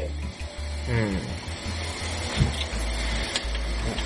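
Shredded carrots cooking in a frying pan on an electric hob, with a steady low hum and an egg cracked into the pan partway through.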